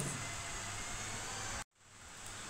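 Steady hiss of recording background noise in a gap between spoken phrases. Near the end it cuts to dead silence for an instant at an edit, then comes back a little fainter.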